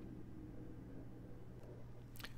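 Quiet room tone: a faint steady low hum, with one faint click late on.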